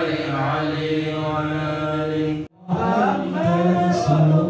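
Male voices chanting Arabic shalawat in long, held, melodic lines. The sound cuts out completely for a moment a little past halfway, then the chanting resumes.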